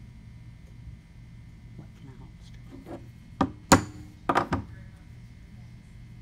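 Claw hammer tapping a 1/16-inch pin punch to drive the pin out of a worm gear: a few faint taps, then about five sharp strikes in quick succession a little past the middle, the second the loudest.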